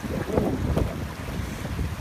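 Bare feet wading through a shallow, stony stream, water splashing and sloshing around the ankles, with wind rumbling on the microphone.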